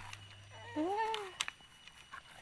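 A single drawn-out vocal call, about a second long, rising and then falling in pitch.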